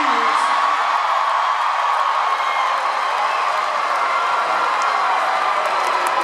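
Large concert crowd cheering and whooping steadily, with voices close by.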